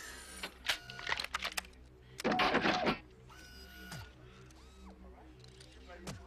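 Electric servo whirs and mechanical clicks of a movie robot moving its limbs, in several short bursts, the loudest and densest a little past the middle, over a low repeating hum.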